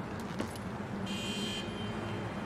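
Steady low rumble of distant city traffic. About a second in, a thin high-pitched tone sounds for about half a second.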